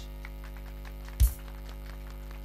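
Steady mains hum through the PA sound system, with a single thump a little over a second in, like a handheld microphone being knocked.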